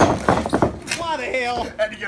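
A sharp knock right at the start, then a few lighter knocks, followed by a man's voice calling out in the second half.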